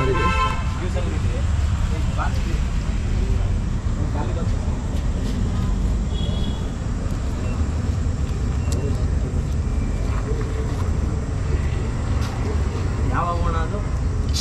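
Street traffic noise, a steady low rumble of passing and running vehicles, with a car horn tooting briefly at the start and a short higher toot about six seconds in.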